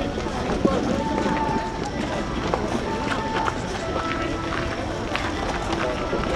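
Crowd of many people talking over one another, a continuous overlapping hubbub of voices with scattered light clicks and scuffs.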